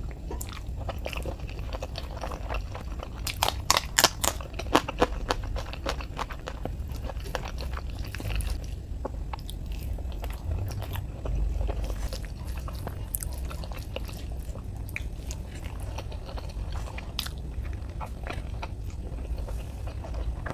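Close-miked mouth sounds of a person chewing rice and egg curry eaten by hand, with a run of loud crunchy bites a few seconds in and softer chewing clicks after. A steady low hum runs underneath.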